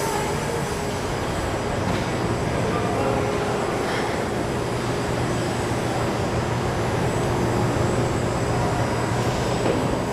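Adco CTF-470V automatic tray former running: a steady mechanical din with a low hum that grows stronger about halfway through, and a few faint clicks.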